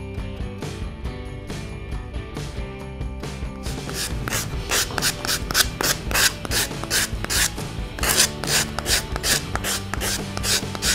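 Sanding block rubbed back and forth over a polystyrene foam egg, smoothing its dried primer coat. The rasping strokes are faint at first, then from about four seconds in come louder, about three or four a second.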